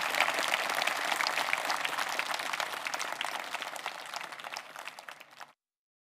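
Audience applauding, the clapping slowly dying away, then cut off suddenly near the end.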